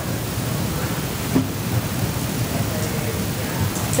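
Steady meeting-room background noise, a low rumbling hiss from the room and microphones with no talking, and one short faint click about a third of the way through.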